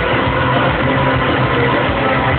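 Live rock band playing loudly in an arena, with a steady low bass drone under the guitars. The sound is dull, with all the highs cut off.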